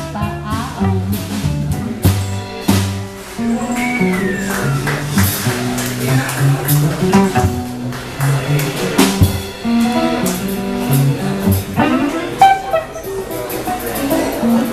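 Live small jazz band playing an instrumental passage of a swing-blues tune, with guitar and a stepping bass line to the fore.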